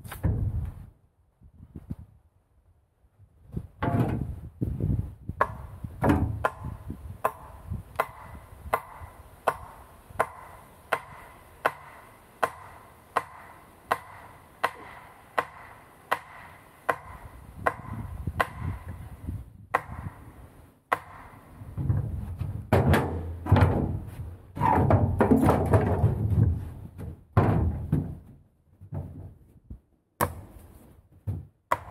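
Hammer driving a sharpened wooden stake into the ground: evenly paced blows, about three every two seconds, each with a slight ring. Near the end the blows come louder and closer together.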